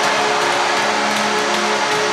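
Arena goal horn blowing one long steady chord, signalling a goal, over the noise of the crowd.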